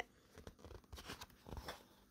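Near silence with a few faint, soft rustles and small clicks.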